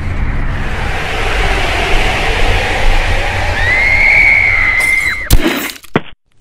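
Loud horror-film sound effects: a rumbling, hissing drone with a high shrill screech that holds and then drops, about four seconds in, followed by a crash just before the sound cuts off suddenly.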